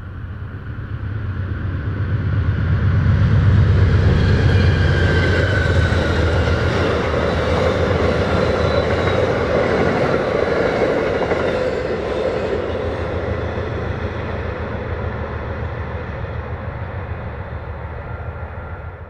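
Amtrak passenger train led by a GE P42DC diesel-electric locomotive passing by. The rumble of the locomotive and the wheels on the rails builds over the first four seconds, holds as the coaches go by, then slowly fades as the train draws away.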